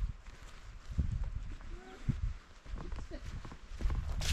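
Footsteps of a person walking over a forest dirt and leaf-litter path, with uneven low rumble from wind or handling on the microphone.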